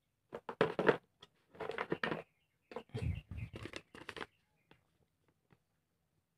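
Paper instruction sheet rustling and crinkling in irregular bursts as it is handled, stopping about four seconds in, followed by a few faint ticks.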